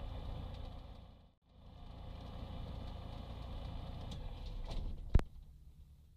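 Light aircraft's propeller engine idling steadily. About five seconds in there is a single sharp click, and the engine then winds down and stops.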